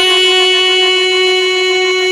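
Rajasthani wedding-song music: one instrument holds a single long, steady note, unwavering in pitch.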